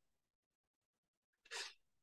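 Near silence, then one short, faint breathy puff about one and a half seconds in: a person's quick intake of breath.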